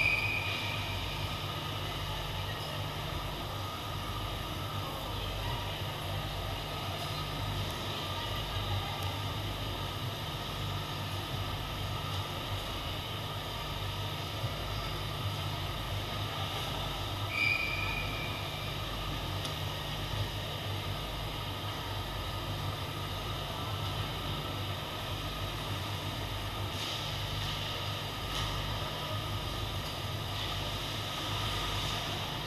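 Ice hockey rink during play: a steady low hum with a slow pulse under faint, indistinct rink noise. Two short high tones break through, one right at the start and one about 17 seconds in.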